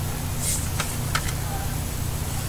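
Steady low hum, with a brief plastic rustle and two or three light clicks near the middle from a DVD case being handled.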